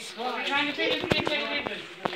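Indistinct talking, with several sharp clicks among the voices near the middle.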